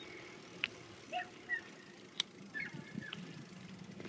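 Quiet outdoor background with a few sharp clicks and a couple of short, faint chirps.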